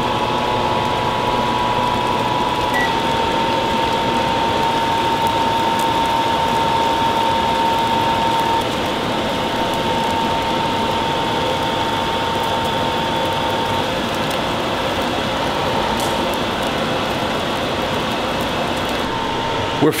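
A saucepan of Coca-Cola at a rolling boil, bubbling steadily as the water boils off, with a faint steady tone underneath.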